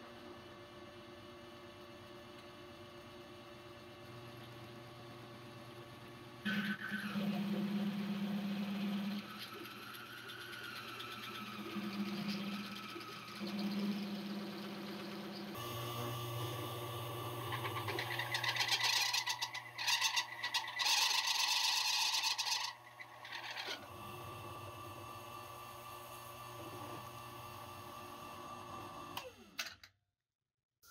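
Drill press motor running while a step bit cuts a 7/8-inch hole through 3/16-inch 304 stainless steel plate, lubricated with water. There is a steady hum throughout, joined by louder grinding and hissing from the cut in the middle of the stretch. The bit breaks through the plate by the end.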